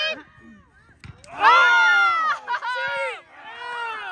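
Spectators' voices shouting from the sideline: one long, loud, drawn-out call about a second and a half in, then two shorter calls near the end.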